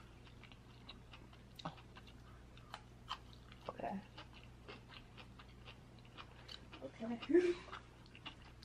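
Close-miked chewing of food: soft wet mouth clicks and smacks coming irregularly, with a brief faint hum about four seconds in and another near the end.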